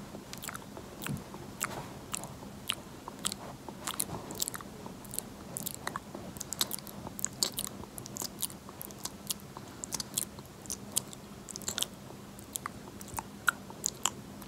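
Close-miked wet mouth sounds: irregular clicks and smacks of lips and tongue, several a second, over a faint steady hum.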